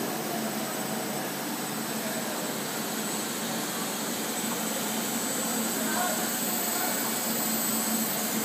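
Steady running noise of a rubber hose extrusion line, with the extruder, chiller fans and haul-off machinery running together as an even hiss with a thin, steady high whine.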